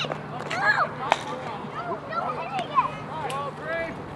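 Spectators and young players shouting and chattering around a youth baseball game, with a sharp crack of the bat hitting the ball partway through.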